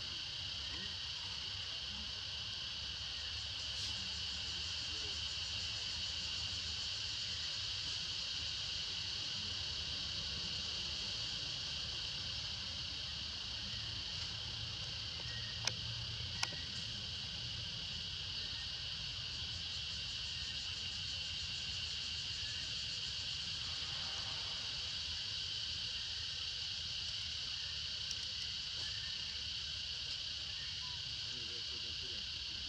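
Steady, high-pitched insect chorus droning without a break, with two sharp clicks a little past halfway.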